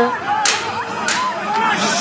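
A packed crowd of men shouting over one another, with two short, sharp sounds about half a second and a second in.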